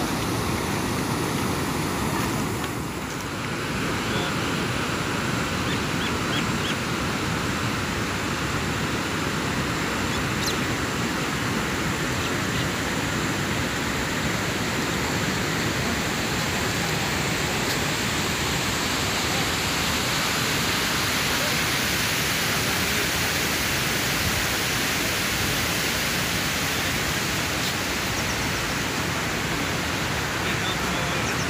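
Steady, loud rush of wind buffeting the microphone, with a brief dip about three seconds in.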